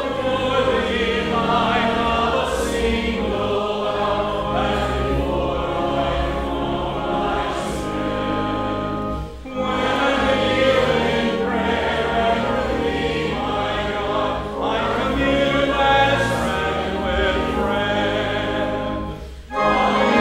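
Many voices singing a hymn together, in long phrases with a short break about halfway through and another near the end.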